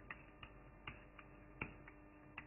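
Faint, irregular ticks of a pen tip tapping and stroking on a writing board as a word is handwritten, about six in two seconds.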